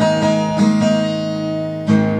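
Acoustic guitar strumming chords in a slow country song, the chord ringing on between strokes, with a fresh strum just before the end.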